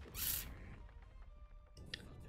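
Anime episode soundtrack playing quietly: background music, with a brief noisy swish about a quarter of a second in.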